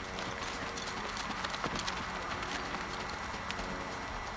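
A horse walking on a lead over dry pasture: light, irregular hoof steps over a steady hiss.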